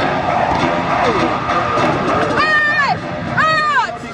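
Martial arts students shouting in unison as they strike: short, high-pitched shouts that rise and fall, two of them about a second apart in the second half, over a busy mix of voices.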